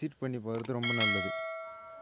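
Bell chime sound effect from a subscribe-button animation. It is one bright, ringing chime that starts a little under a second in, over the tail of a spoken phrase, and slowly fades away.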